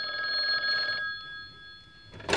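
Yellow rotary-dial wall telephone's bell ringing once: a single ring of about a second that then dies away.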